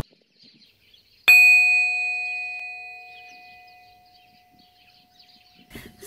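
A single bell-like chime struck once about a second in, ringing with several clear tones and fading slowly over about three seconds.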